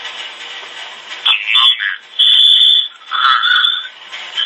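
A man's voice, heavily garbled and choppy, as over a poor call connection, starting about a second in.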